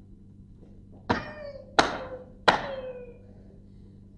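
Three sharp knocks, evenly spaced a little under a second apart, each leaving a brief ringing tone that dies away.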